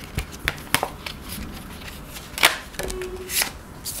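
A deck of Osho Zen tarot cards being shuffled by hand over a marble tabletop: scattered light clicks and taps of cards, with two louder swishes of cards sliding about two and a half and three and a half seconds in.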